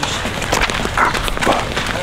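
Footsteps of people walking on a dirt and gravel road: a run of irregular steps and scuffs.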